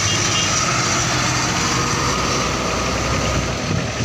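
Diesel tractor engine running steadily under load with tyre and road noise, as a tractor hauling a heavily loaded sugarcane trolley moves along close by.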